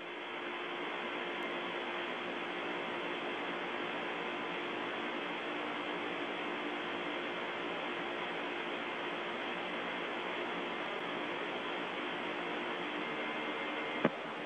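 Steady hiss of the Soyuz capsule's open crew audio channel during third-stage powered flight, with a faint steady hum beneath it. The hiss is cut off above a narrow band, as on a radio link.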